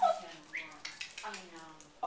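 A dog whining: two drawn-out whimpers, each sliding down in pitch, after a sharp yelp-like sound at the very start.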